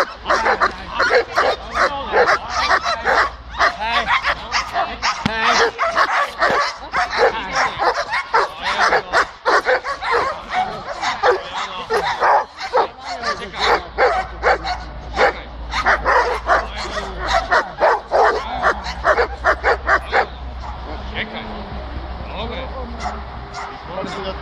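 German shepherd-type dogs barking rapidly and continuously at a decoy with a bite sleeve during protection training, with some higher yips mixed in. The barking stops about twenty seconds in.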